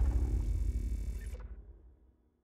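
Dying tail of a logo-sting sound effect: a low rumble that fades away steadily, its higher part cutting off about one and a half seconds in.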